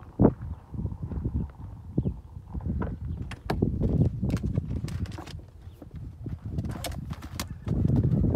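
Footsteps crunching on gravel in an uneven series of clicks and scuffs, over an irregular low rumble.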